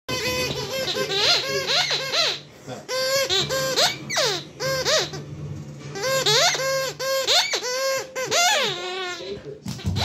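Rubber corn-cob squeaky toy squeaking over and over as a springer spaniel puppy chews and shakes it, in quick runs of squeaks with short pauses between them.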